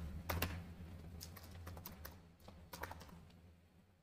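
Computer keyboard typing: a string of faint, irregular key clicks that stops about three and a half seconds in.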